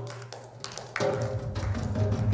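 Hand drum played by hand: a low ringing stroke about a second in, then quicker sharp strokes, with hand clapping.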